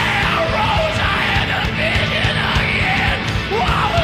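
Loud, raw rock music with a singer yelling over a dense band and drums.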